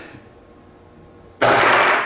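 A single loud hammer blow about one and a half seconds in, snapping a steel bar magnet in two, with a short noisy tail of under a second as the pieces are knocked apart.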